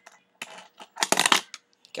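A short burst of clattering and clicking from small hard objects being shuffled about on a wooden desk by hand, about a second in, after a faint rustle.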